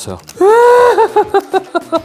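A person's high-pitched voice: a held cry about half a second in, then a quick run of short clipped syllables.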